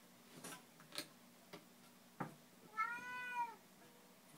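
A baby tapping a plastic lid and an upturned plastic bowl on a carpeted floor, a few light taps about half a second apart. About three seconds in comes a short, high squeal whose pitch rises and falls, louder than the taps.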